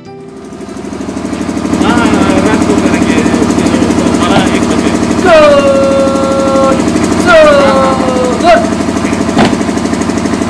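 A generator runs with a steady, rapid throb that swells up over the first two seconds. Over it, a drill commander shouts long, drawn-out parade commands three times, the first about halfway through. A single sharp knock comes shortly before the end.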